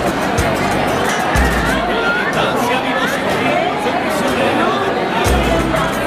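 Crowd chatter, many voices at once, over music with a heavy bass beat that drops out in the middle and returns near the end.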